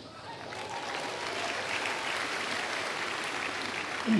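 A congregation applauding. The clapping builds over the first second and then holds steady.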